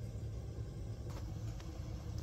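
Steady low hum with faint background noise, quieter than the talk around it.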